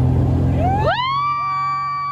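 Motorboat engine running steadily under load as a water-skier is pulled up. About a second in, a long high whoop of a cheer rises, holds and starts to fall away.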